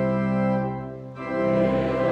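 Church organ playing a psalm tune for congregational singing. The sound dies away briefly about a second in, then the organ comes back in at full strength.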